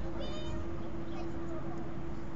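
Steady low outdoor rumble with a constant hum, and one brief high-pitched call about a quarter of a second in.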